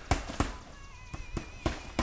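Sharp knocks from roofers working on a shingle roof, about half a dozen, irregularly spaced.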